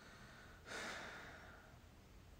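A man's single faint breath out, like a short sigh, about two-thirds of a second in, fading away over most of a second.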